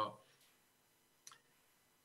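A man's voice trails off at the start, then a pause of near silence broken by one faint short click about a second and a quarter in.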